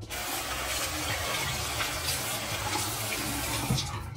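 Water running steadily from a bathroom tap into a sink.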